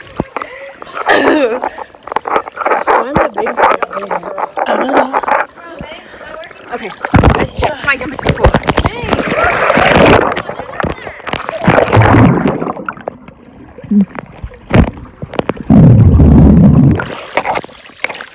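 Swimming-pool water splashing and gurgling over the microphone of a camera dipped in and out of the water, with girls' voices in between and a loud watery rush near the end.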